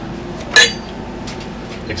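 A single short clink of a drinking glass about half a second in, with a brief ringing tail.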